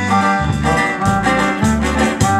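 Live dance music from a band with guitars and keyboard, a bass line marking a steady beat.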